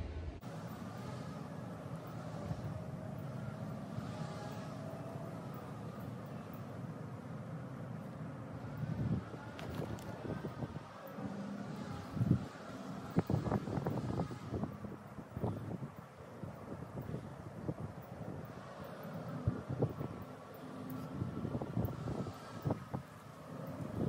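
Wind buffeting the microphone over a steady, faint, droning hum. From about nine seconds in, scattered short clicks and rustles of close handling come through the wind.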